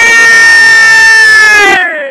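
A spectator's long, loud, high-pitched scream, held on one pitch and trailing off with a falling pitch near the end.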